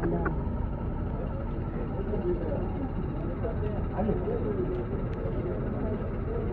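Indistinct voices of several people talking over a steady low rumble.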